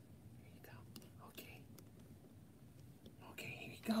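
Quiet handling of a small plastic action figure, with a few faint light clicks as a cloth mask is fitted into its hand, under soft whispered muttering.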